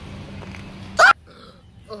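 A single short, loud yelp about a second in, over a low steady background hum that stops right after it.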